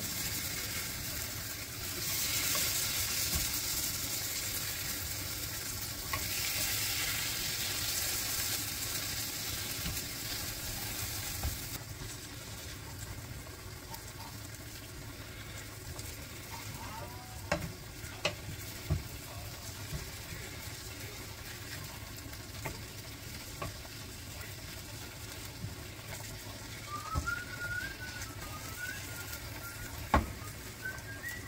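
Beef-and-egg patties sizzling as they fry in an oiled sectioned pan just after being flipped, loudest over the first ten seconds or so and then softer. A few sharp taps of the spatula against the pan come around the middle.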